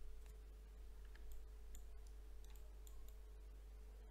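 Faint, scattered computer mouse clicks, several spread irregularly over a few seconds, over a faint steady electrical hum.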